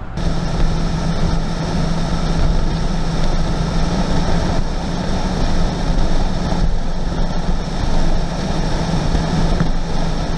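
Mercedes OM606 3.0-litre inline-six turbodiesel in a G-Wagon running at a steady cruise: a constant drone with an even hum, mixed with wind and road noise.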